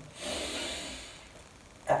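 A man's deep, deliberate in-breath: a soft rush of air lasting about a second that fades away.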